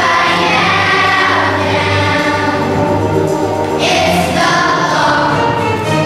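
Children's choir singing a song together over a steady musical accompaniment.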